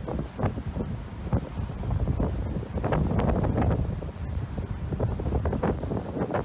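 Wind buffeting the microphone in irregular gusts over a low rumble from the ship and the sea on an open deck.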